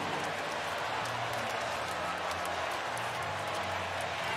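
Ballpark crowd noise reacting to a home run: a steady wash of many voices and cheering.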